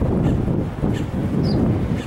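Wind buffeting the camera microphone: an uneven low rumble that gusts up and down.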